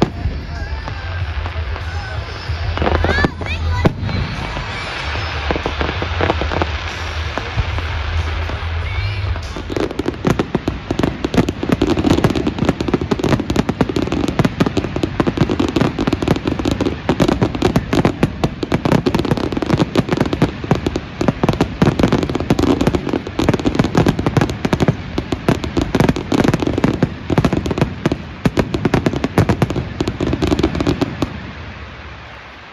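Aerial fireworks display: scattered bangs at first, then from about ten seconds in a dense, continuous barrage of rapid crackling bangs from large shells bursting overhead.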